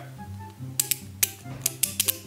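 A handful of sharp, irregular plastic clicks as a Beyblade Burst spinning top is turned and handled in the fingers, over soft background music.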